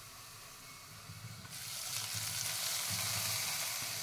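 Hot coconut oil and fried shallots poured from a small aluminium pan onto fish curry in a clay pot, sizzling as the tempering hits the curry. The sizzle swells about a second and a half in and eases off toward the end.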